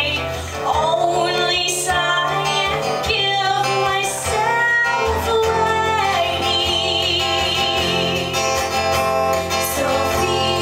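A woman singing a slow song over acoustic guitar, live. In the second half she holds a long note with vibrato.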